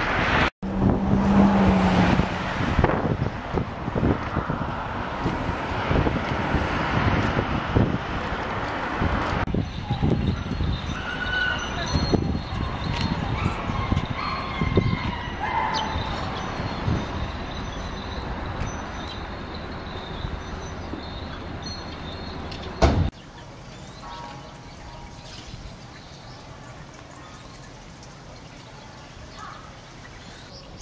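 Outdoor street background: a low rumble of wind on the microphone and traffic noise. About three quarters of the way through it drops suddenly to a quieter background.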